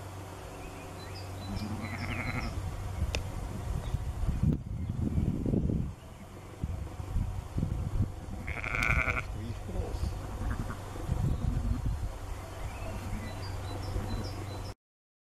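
Sheep bleating: two short high calls, about two seconds in and again near nine seconds, over irregular low buffeting noise.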